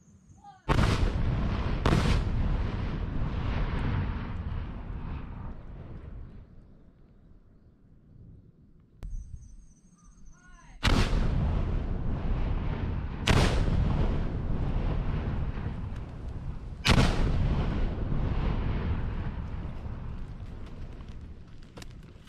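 Explosive demolition charges detonating: five heavy blasts, two about a second apart near the start and three more in the second half, each followed by a long rumbling echo that dies away over several seconds.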